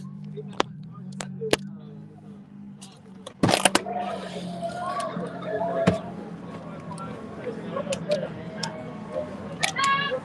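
Inside a car: a steady low hum and a few sharp clicks. About three and a half seconds in comes a loud clunk as the car door is opened, and after it the street noise and voices from outside come in much louder.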